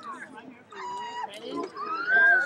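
Young children's high-pitched voices calling out, with one call held steady about a second in and a long rising-then-falling call starting near the end.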